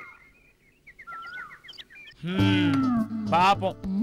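Small birds chirping faintly in short, high, repeated notes. A little over two seconds in, a loud voice with sliding pitch comes in over background music.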